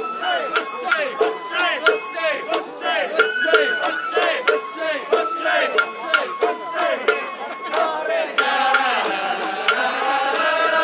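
Sawara-bayashi festival music played live on a float: bamboo flute with gliding, ornamented notes over a steady pattern of taiko drum and hand-gong strikes. About eight seconds in, the music thickens into longer held notes.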